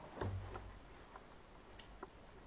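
A few faint, irregular ticks and clicks over low room noise, with a brief low hum just after the start.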